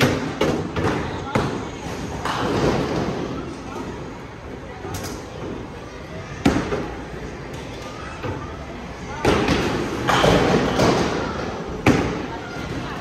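Bowling alley noise: bowling balls thudding and knocking, with several sharp knocks spread through and stretches of denser clatter, over background voices.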